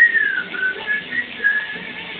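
A person whistling a short phrase: one longer falling note, then four short notes.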